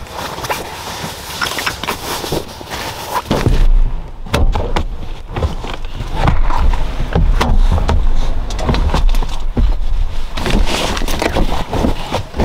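Rustling of fabric gear bags and bedding, with knocks and thumps as gear is shifted around in the Jeep's cargo area. A low rumble joins in from about four seconds in.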